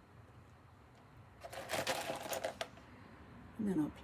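Small pieces of glass crystal clicking and rattling against each other as they are picked up, a cluster of clicks lasting about a second, starting about a second and a half in.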